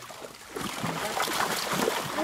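Water splashing and churning inside a seine net as it is hauled in through the shallows, starting about half a second in and going on steadily.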